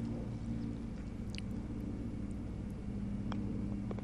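A steady low hum of outdoor background, with a faint click about three seconds in as a putter taps a golf ball on a short tap-in putt, and a few small clicks near the end.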